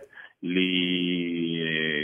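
A man's voice through a telephone line, holding one drawn-out syllable at a steady pitch for about a second and a half, a hesitation in mid-sentence.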